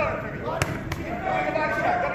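Two sharp smacks of boxing punches landing, about a third of a second apart a little past halfway, over the voices of people ringside.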